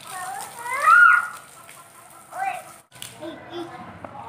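A toddler's high voice calling out without words, rising and falling in pitch, loudest about a second in, with a shorter call about two and a half seconds in, over the faint hiss of water spraying from a garden hose.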